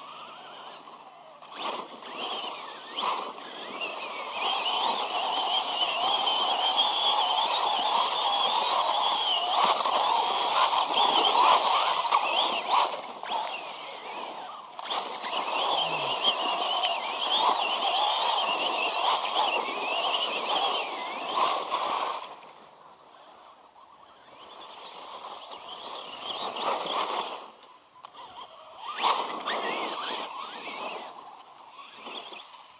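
Electric RC monster truck (Helion Avenge 10MT XLR) driven hard on dirt and gravel: the brushless motor whines, its pitch warbling up and down with the throttle, over the rough noise of the tyres and drivetrain. It goes much quieter about three quarters of the way through, then picks up again briefly near the end.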